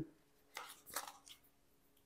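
A few faint, light clicks about half a second to a second and a half in: diamond painting drills being tapped onto the canvas with a drill pen.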